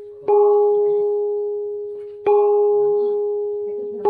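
A small hand-held gong is struck with a stick twice, about two seconds apart. Each strike rings on at one steady pitch with higher overtones and slowly fades, and a third strike lands right at the end.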